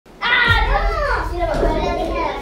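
A child's high voice calling out without clear words, starting a moment in, in a drawn-out sing-song cry whose pitch rises and then falls.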